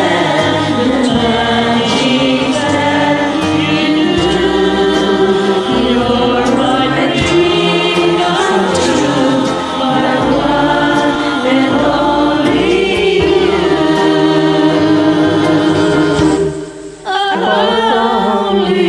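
Singing to a karaoke backing track, with several voices in the mix, as in a group recording; the music drops out briefly near the end before the voices come back.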